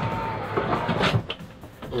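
A hideaway plastic camper toilet being pulled out of its cabinet: plastic sliding and rubbing, with knocks and a louder clunk about a second in.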